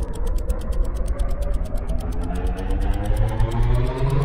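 Rolling-counter sound effect: fast mechanical ticking, about ten ticks a second, over a low rumble and tones that rise slowly in pitch, building tension.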